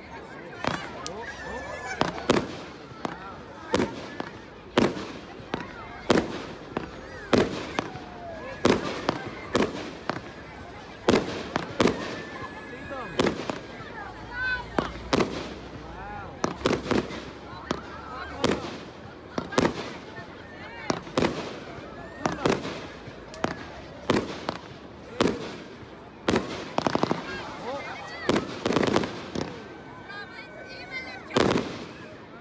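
Fireworks display: a steady run of sharp bangs from aerial shells bursting, about one or two a second.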